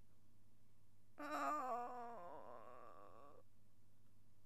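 A person's drawn-out, wavering whine of dismay, about two seconds long, starting a little over a second in.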